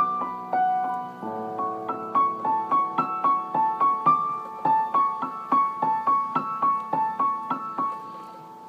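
Solo piano playing a slow melody, the notes struck evenly about three a second over held lower notes, easing off near the end.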